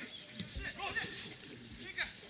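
Players' shouts and calls on a football pitch during open play, short drawn-out voices heard from the sideline, with a short sharp knock at the very end.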